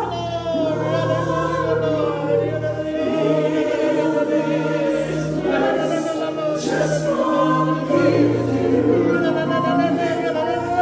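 Gospel worship song sung by several voices through microphones, a woman leading with other singers joining in, over instrumental accompaniment with a sustained bass line.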